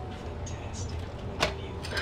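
A single sharp click about one and a half seconds in, as of a hard object tapped or set down, over a low steady hum.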